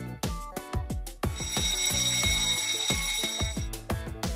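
Alarm-clock ringing sound effect, starting about a second in and lasting about two and a half seconds, signalling that the quiz countdown timer has run out. It plays over background music with a steady beat.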